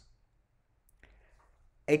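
Near silence, with a faint click about a second in, then a voice starts speaking near the end.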